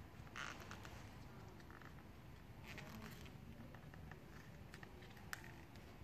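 Faint rustling and scratching of fingers working vinyl wrap film around a rubber window seal strip, in two short bursts about half a second and three seconds in, with a sharp small click a little after five seconds.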